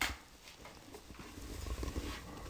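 A single computer key or mouse click at the start, followed by a faint low rumble.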